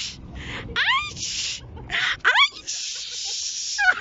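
A person's voice making short rising squeals, mixed with hissing sounds, including a long hiss of about a second near the end.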